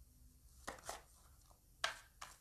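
Faint handling of tarot cards: a few short sharp clicks and taps, two close together a little before the middle and a louder one near the end.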